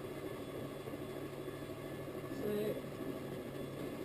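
Electric potter's wheel running with a steady low hum while wet clay is centred under the hands, rubbing as it turns. A short vocal sound comes about two and a half seconds in.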